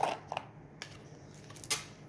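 Oracle cards being handled and set down on a glass tabletop: a few light clicks and taps, the sharpest one near the end.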